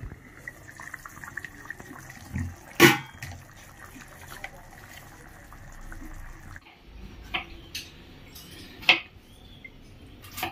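Tomato gravy simmering and bubbling in a kadhai, with a sharp clink of the pot lid about three seconds in and a few lighter knocks near the end.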